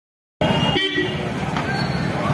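Busy street ambience of voices and traffic. A brief vehicle horn toot sounds just after the audio begins.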